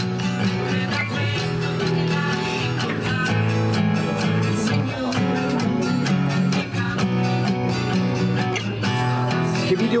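Acoustic guitar being strummed and picked in a steady rhythm.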